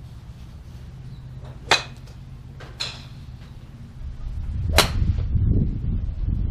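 Golf clubs striking balls off driving-range mats: three sharp cracks, about 1.7, 2.8 and 4.8 seconds in. The last is the loudest, a full drive, and under it a low rumble builds over the last two seconds.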